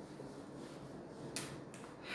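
Faint room tone broken by a sharp click about one and a half seconds in, with a fainter click just after.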